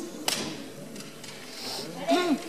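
A single sharp slap about a third of a second in, with a couple of fainter taps after it: a gymnast's hand striking the pommel horse during his circles. A low murmur of voices from the hall runs underneath.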